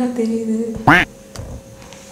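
A voice chanting a spirit invocation, holding one long drawn-out note, then a brief sharp squeak that rises and falls in pitch about a second in.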